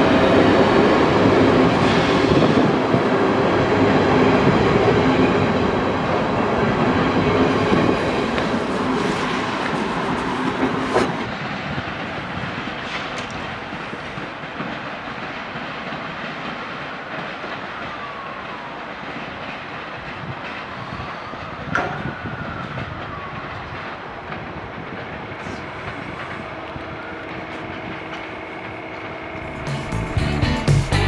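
A Ganz-MÁVAG BVmot diesel multiple unit passes close by and pulls away. Its wheels clatter over the rail joints, loud at first, then fade steadily into the distance from about a third of the way in. A faint squeal rises and falls about halfway through as the train runs off over the curving tracks.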